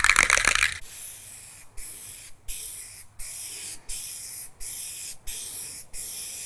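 Aerosol can of John Deere Medium Gloss Black paint, shaken with its mixing ball rattling for the first second or so, then spraying in a run of short hissing passes, each about 0.7 s long with a brief break between them.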